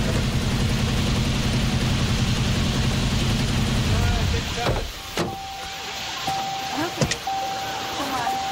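A car engine running with a loud, steady low rumble that cuts off about four seconds in. A few sharp clicks and a steady high tone with short breaks follow.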